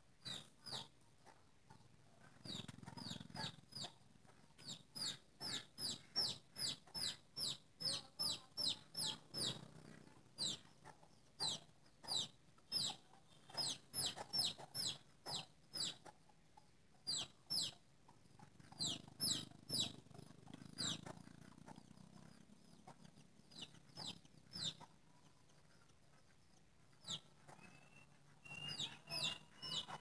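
Bird calls: a short, high, falling note repeated about three times a second in long bouts with brief pauses between them.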